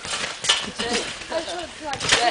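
A person landing on a wet, water-covered trampoline mat: a few sharp impacts, at the start, about half a second in and near the end, with short bursts of voice or laughter between them.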